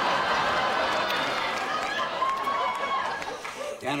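A live studio audience laughing, a dense crowd sound that eases off near the end.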